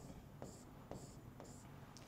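Faint stylus strokes on a drawing tablet: four short scratches about half a second apart, as a star mark is drawn.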